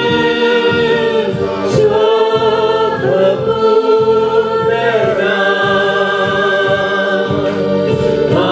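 Two women and a man singing a Christian worship song together through microphones, in long held notes.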